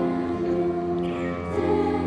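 Girls' choir singing sustained chords with grand piano accompaniment, the harmony moving to a new chord about one and a half seconds in.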